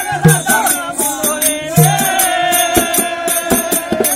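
Folk theatre music: a dholak (two-headed hand drum) playing a rhythm of deep bass strokes and sharp clicks under a held, slightly wavering melody.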